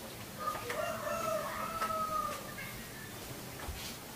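A rooster crowing once, a single long call of about two seconds that starts about half a second in, faint over background hiss.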